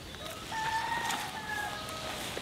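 A rooster crowing once: one long call that starts about half a second in and lasts just over a second, dropping slightly in pitch at the end.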